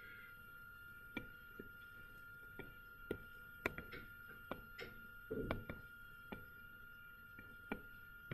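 Faint, sharp ticks of a stylus tapping and dragging on a tablet screen while a box is drawn, about a dozen scattered clicks, over a steady faint high-pitched tone.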